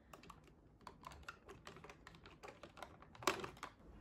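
Plastic makeup compacts and lipstick cases clicking and clattering lightly as they are handled in a drawer organiser: a scatter of small clicks, with one louder clack near the end.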